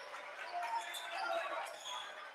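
Faint basketball gym sound: a ball being dribbled up the court over a low murmur of crowd voices.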